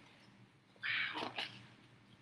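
A woman's short, quiet exclamation of "wow" about a second in; otherwise near silence.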